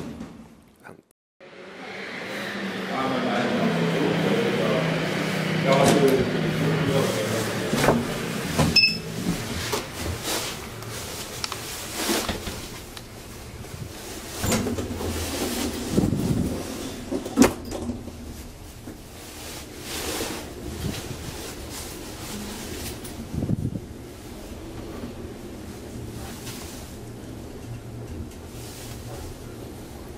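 Doors of an old Asea-Graham traction elevator being worked: a series of sharp clunks and latch clicks as the swing landing door and the car's inner doors are shut. After that comes a quieter, steady running sound as the car moves.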